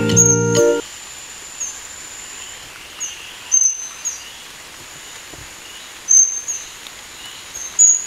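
A music passage ends in the first second. After it, an oriental dwarf kingfisher gives short, very high-pitched thin calls, singly or in quick pairs, every second or two, over faint forest ambience.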